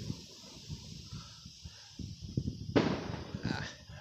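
Distant aerial fireworks going off: a quick, irregular string of low, muffled pops and booms, with one louder bang a little under three seconds in.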